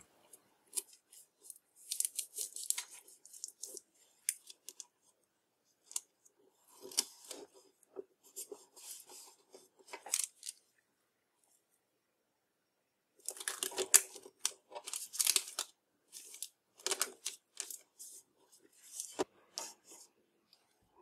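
Adhesive tape being pulled, torn off and pressed down over a paper template on a metal panel, with rustling of the paper, in short quiet scratchy bursts and a pause about midway.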